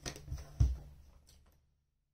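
Tarot cards being shuffled and handled, faint soft clicks and rustles with one sharper knock about half a second in, then the sound drops out entirely near the end.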